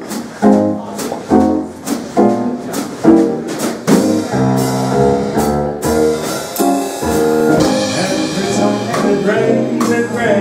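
Big jazz band of saxophones, trumpets, trombones, piano, guitar, bass and drums playing in swing style: short ensemble chord hits with cymbal strokes for the first few seconds, then longer held horn chords over the rhythm section, with a cymbal wash near the end.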